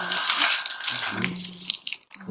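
Baby macaques making noisy, high-pitched calls.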